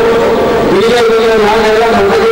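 A man giving a loud speech into a microphone, his voice carried through a public-address system in long, drawn-out phrases.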